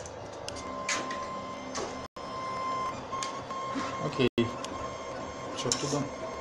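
Wanhao Duplicator i3 3D printer's stepper motors running as they drive a diode laser head across cardboard while engraving. There is an on-off whine with scattered clicks. The audio cuts out completely twice, briefly.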